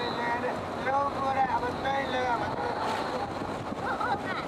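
Road and wind noise from a moving vehicle, with a person's voice over it.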